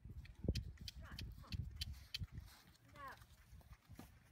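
Irregular thuds and sharp clicks from a horse moving on the dirt of a pen, the loudest thud about half a second in. A single honking call sounds about three seconds in.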